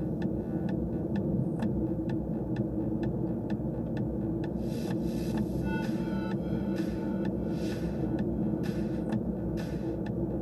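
Car cabin noise while driving: a steady low rumble of engine and tyres on the road, with a light regular ticking about three times a second in the first few seconds.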